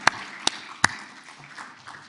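Audience applause dying away, with three loud single claps close to the microphone, about 0.4 s apart, in the first second.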